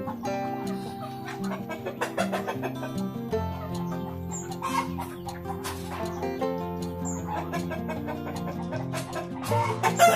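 Village chickens clucking as they feed, over a background music track with held notes.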